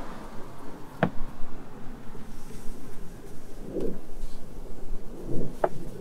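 Handling noise of a fabric car sunshade being pushed up and fitted against a glass roof: rustling, with a sharp click about a second in and another near the end, and a couple of soft knocks in between.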